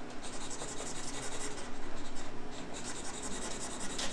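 Pen stylus scratching and rubbing on a drawing tablet in uneven strokes as an area is shaded in.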